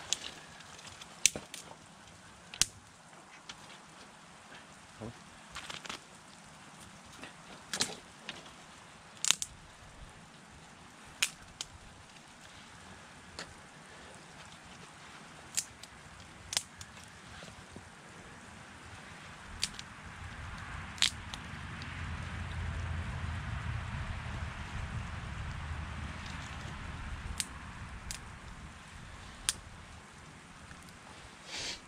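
Sticks and small branches snapping, sharp single cracks every second or two, as kindling is broken for a campfire. About twenty seconds in, a vehicle passes on a nearby road, a low rumble that swells and fades over several seconds.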